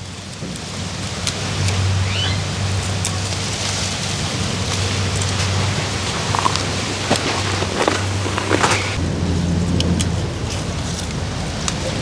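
Wind buffeting the microphone: a steady rushing noise with a low rumble, and a few light clicks and rustles.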